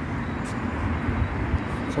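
Street traffic noise: a steady low rumble from a car driving along the road, with a single short click about half a second in.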